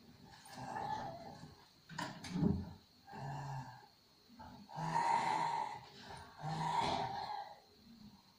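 An elderly man lying in bed breathing noisily: a run of rough, low, voiced breaths, about one every second or two.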